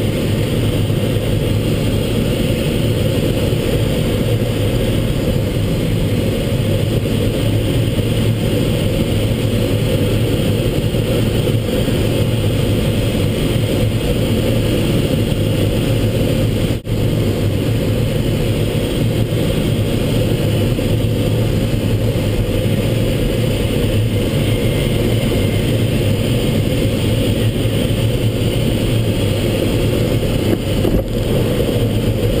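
Steady rush of airflow around a Schempp-Hirth Mini Nimbus sailplane's cockpit in a descending landing approach, with its dive brakes fully extended.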